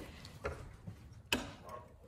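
A few faint clicks over quiet room background, the sharpest about a second and a half in.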